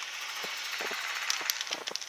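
Dry grass and brush rustling close by, a steady hiss with irregular crackles and clicks that come more often in the second second.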